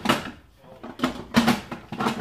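An Instant Pot lid being set on the pot and twisted to lock: a run of clattering knocks and scrapes, in two spells with a short pause about half a second in.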